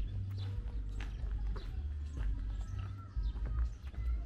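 Footsteps on a concrete lane at walking pace, about two sharp steps a second, over a steady low rumble.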